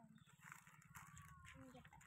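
Near silence, with a few faint, short pitched calls: one at the start, a thin gliding tone about a second in, and another near the end.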